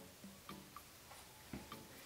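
Near silence with faint, short ticks repeating a few times a second, plus a few soft low thumps.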